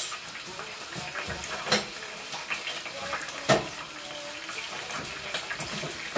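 Beef hamburger patty frying in oil in a pan, a steady sizzle with two sharp pops of spitting oil, about two seconds in and again halfway through.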